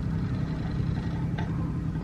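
A steady low hum, with one faint click about one and a half seconds in.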